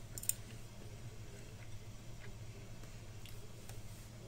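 Someone chewing a bite of chicken: faint, scattered clicks and mouth sounds, with one sharper click just after the start, over a steady low hum.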